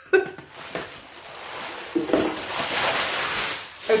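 Rustling and crinkling of packaging being handled, a steady noisy rustle that builds from about two seconds in, after a brief faint laugh at the start.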